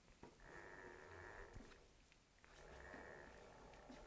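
Faint rubbing of a chalkboard eraser wiped across a chalkboard in two long strokes, each about a second long.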